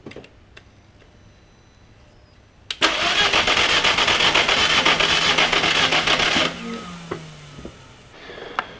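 The 1.8-litre turbo four-cylinder engine of a 2002 VW Jetta wagon being cranked by its starter for about four seconds, a rapid even pulsing that stops abruptly without the engine ever firing. It is a crank-no-start, even with a spare ECU fitted: the ignition signal from the ECU is not reaching the coils.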